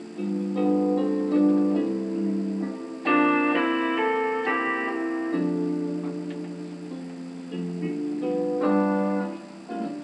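Piano played solo: a slow passage of held chords, with fresh chords struck about three seconds in, again past halfway, and near the end.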